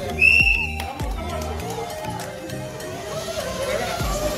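Background music with a steady beat throughout; about a quarter second in, a single high whistle blast, about half a second long, gives the start of the race.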